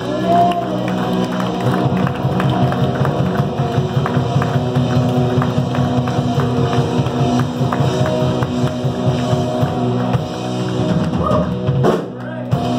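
Live worship band playing an instrumental passage in a rock style: drum kit keeping a steady beat under sustained electric guitar, bass and keyboard.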